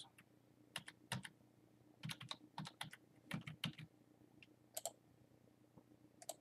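Computer keyboard being typed on, faint, in short irregular runs of keystrokes with pauses between them.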